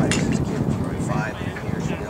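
Indistinct conversation of spectators close to the microphone, with one short sharp click just after the start.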